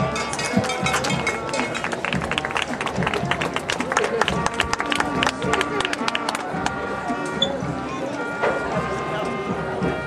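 High school band playing held notes, with a run of quick percussive strikes in the middle, under the talk of the crowd in the stands.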